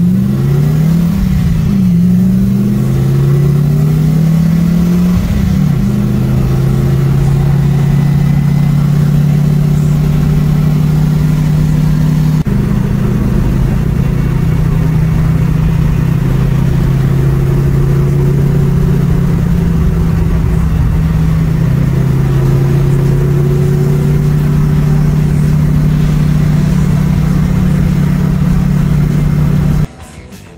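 Factory Five GTM's Corvette Z06 V8 engine, heard from inside the cabin while driving. The engine note rises and falls several times in the first few seconds as the car accelerates through the gears, then settles into a steady cruising note with a brief dip about twelve seconds in.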